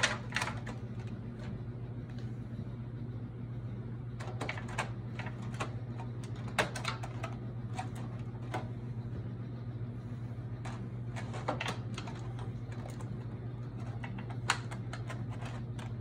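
Spatula spreading whipped cream over graham crackers in a disposable aluminium foil pan, giving scattered light clicks and crinkles of the foil, over a steady low hum.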